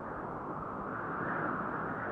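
A steady, muffled noise with no pitch or beat, the sound bed of an animated logo outro.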